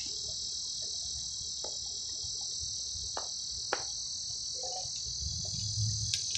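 Steady, high-pitched drone of insects in the summer foliage, with a few faint clicks.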